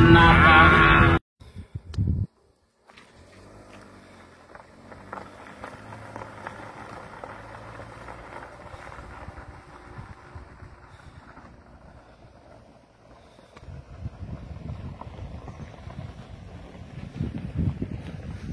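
A rock song plays for about the first second, then cuts off abruptly. After a short silence there is faint outdoor ambience. From about two thirds of the way in, wind buffets the phone's microphone with an uneven low rumble.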